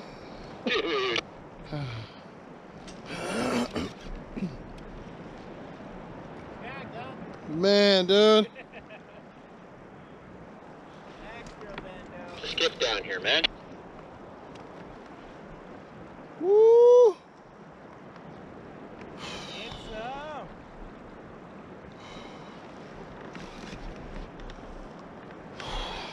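A man's short wordless exclamations and gasps while he strains against a big fish on rod and reel: a loud pair about eight seconds in and a rising-then-falling call past the halfway point, with smaller ones between, over a steady hiss of wind and water.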